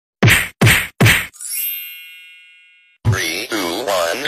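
Edit sound effects: three sharp whacks a little under half a second apart, then a bell-like ding that rings out and fades over about a second and a half. A voice with a sliding pitch comes in near the end.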